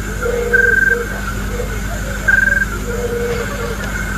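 Night chorus of frogs and insects: a short, high pulsed trill twice, with lower croaking calls between, over a steady low hum.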